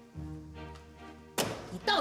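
Soft background music, with one sharp thunk about a second and a half in as a front door is unlatched and pulled open; a woman's voice starts just after.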